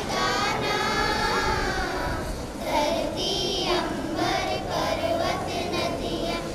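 A group of children singing together in unison, one long held phrase followed by shorter phrases with brief breaks between them.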